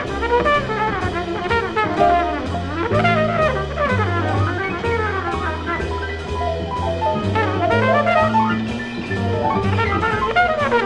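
Live jazz band playing a blues: several horns (trumpets, saxophones, trombone) weave wavering lines over a double-bass line that moves about once a second and a drum kit keeping time on the cymbals.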